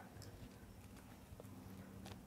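Near silence: faint outdoor background with a low steady hum and a few faint ticks.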